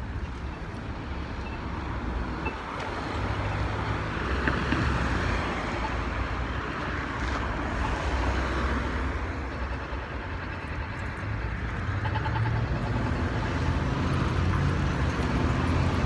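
City street traffic: cars driving along a multi-lane downtown road, a steady rumble and hiss that swells a few seconds in and again near the end.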